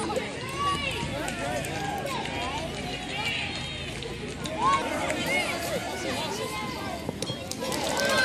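Several voices shouting and calling out at once, overlapping excited cries that rise and fall, with no clear words.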